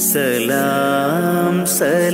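Mappila song: a solo voice sings long held, bending notes over a steady instrumental accompaniment.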